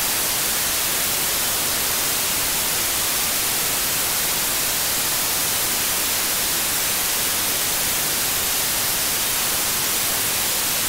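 Steady, loud static hiss from a software-defined radio receiver tuned to 145.800 MHz in narrow FM, with no voice on the channel: the open receiver hissing while the ISS downlink is silent between transmissions.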